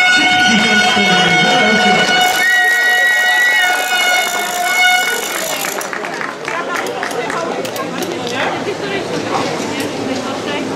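A long, steady horn-like tone held over voices, with a second, higher tone briefly joining it partway through; it cuts off about five seconds in. After that, voices and scattered claps carry on in a reverberant pool hall.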